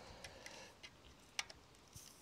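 Near silence with a few faint clicks as a digital tyre pressure gauge is fitted onto the valve of a road-bike wheel, the sharpest click about one and a half seconds in.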